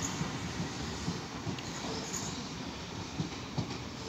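Class 395 Javelin high-speed electric train pulling away, its running noise on the rails slowly fading as it recedes.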